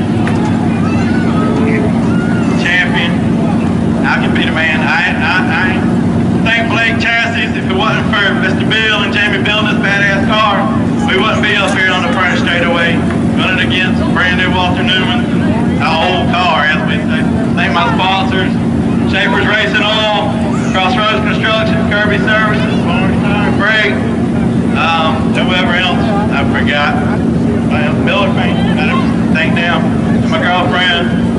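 Indistinct talking by people near the race car, over a steady low engine drone.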